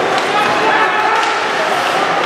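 Ice hockey game crowd noise in an indoor rink: spectators and players calling out over a steady wash of voices, with a few faint sharp clicks from the play.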